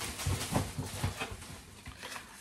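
Rummaging in a shopping bag: a few soft, irregular knocks and rustles as groceries are handled and the next item is pulled out.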